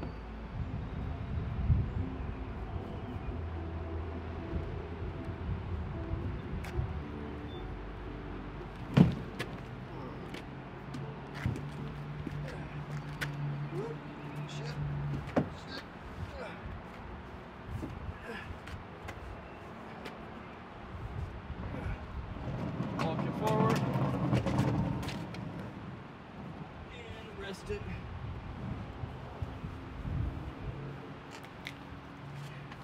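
Occasional knocks and bumps of a canoe being lifted overhead and carried onto a car, with one sharp knock about nine seconds in, over a steady low mechanical hum.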